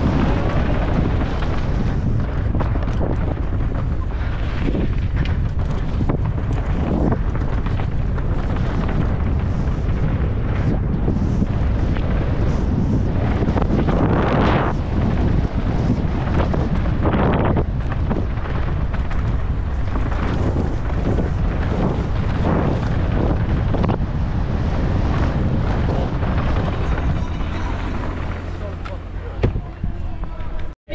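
Strong wind buffeting a helmet camera's microphone as a mountain bike rolls down a dry, gravelly dirt trail, with frequent knocks and rattles from the tyres and bike over the rough ground.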